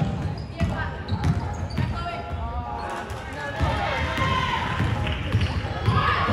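Basketball bouncing on a hardwood gym floor during play, with repeated dribble knocks under the overlapping voices of players and spectators in a large gym.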